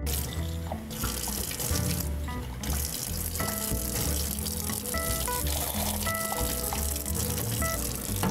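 Tap water running from a lab faucet into a stainless steel sink as a glass beaker is rinsed under the stream; the hiss dips briefly about two seconds in. Background music plays along with it.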